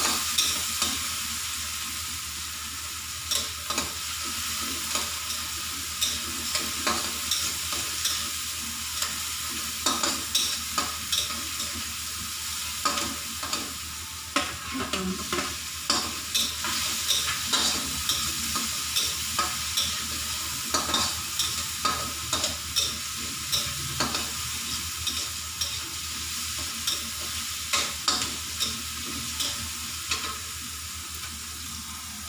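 Garlic, onion and tomato sizzling in oil in a steel wok, with shrimp in the pan later on, while a metal spatula stirs and scrapes, clicking against the pan many times.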